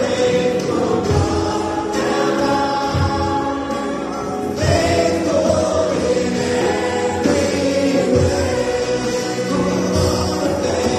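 A choir singing a gospel-style Christian song with musical backing, the voices holding long notes that change every second or two.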